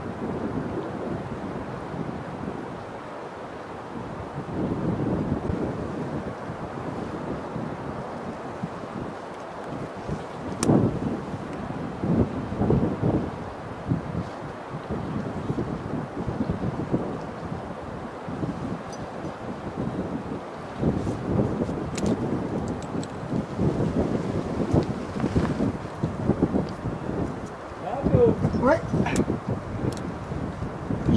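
Wind gusting across the microphone, a rough, uneven noise that swells and eases, with a few faint clicks. Near the end there is a brief pitched sound like a voice.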